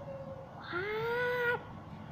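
A single high, drawn-out cry, meow-like, lasting about a second: it rises at the start, holds its pitch, and breaks off sharply.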